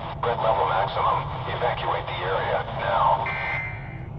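Several automated emergency-broadcast voices talking over one another in a garbled overlap, thin and band-limited like a phone or radio recording, over steady low noise. A short steady high tone comes in near the end.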